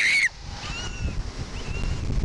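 A girl's scream that breaks off about a quarter second in as the Slingshot reverse-bungee ride catapults its capsule upward. It is followed by wind buffeting the ride-mounted microphone as a low rumble, with faint high squeals over it.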